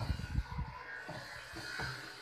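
A few dull, low knocks and handling sounds from the wooden panels of a carved wooden home temple being fitted together, several close together at the start and two more later.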